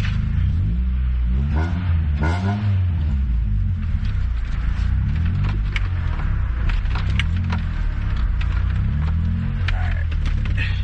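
Honda Prelude H22A1 four-cylinder engine and exhaust heard from inside the cabin while driving, its revs rising and falling as it pulls through the gears. The exhaust is loud even with the resonator fitted.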